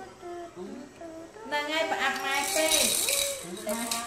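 Plastic toy percussion instrument shaken hard in one burst of rattling from about a second and a half in until shortly before the end.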